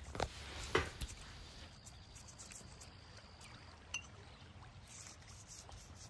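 Faint scratching of a brush's bristles working rubbing alcohol over a spiny cactus stem to scrub off scale insects, with a few soft clicks and knocks.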